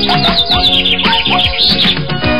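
Cartoon background music with a cartoon bird's rapid high chirps repeating over it, short rising and falling tweets.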